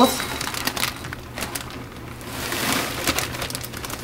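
Dry pet kibble pouring from a plastic zip-top bag into a small ceramic bowl: a patter of hard pellets clattering into the bowl, with the plastic bag crinkling. It comes in spurts, with a rush of pellets near the middle.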